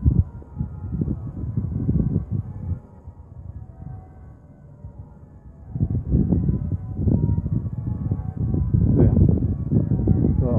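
Cathedral bells ringing, heard as a wash of overlapping steady tones. A heavy low rumble on the microphone covers them for most of the time and drops away for a few seconds in the middle.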